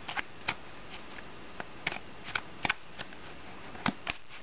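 A deck of tarot cards being shuffled by hand: irregular sharp clicks and snaps of the cards against each other, a few a second with short gaps.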